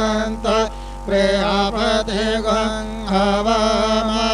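A voice chanting Sanskrit puja mantras in a sing-song recitation, with two short pauses for breath.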